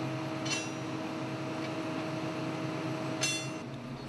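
GOMACO GP3 slipform paver running steadily at close range, a machine hum with a thin steady whine. Two brief metallic clinks ring out, about half a second in and again near the end, as steel bars knock in the paver's bar inserter.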